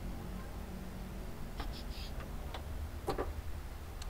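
A few light clicks over a low steady hum as a Suzuki Jimny's hood is unlatched and raised; the sharpest click comes about three seconds in.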